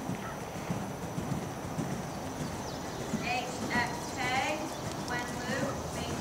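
Hoofbeats of a trotting horse on the soft dirt footing of an arena, dull low thuds.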